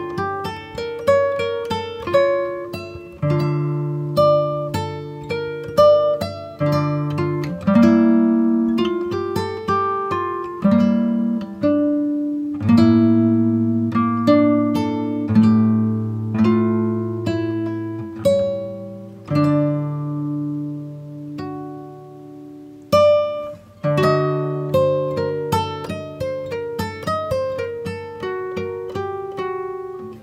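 Background music: a plucked acoustic guitar playing a continuous melody of quickly fading notes over sustained bass notes.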